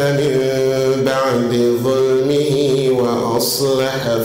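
A man's voice chanting Qur'anic recitation in Arabic over a microphone, in long held notes that turn slowly up and down in melody, with a brief break near the end.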